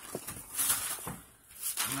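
Styrofoam packing peanuts rustling in uneven bursts as hands scoop them out of a shipping box.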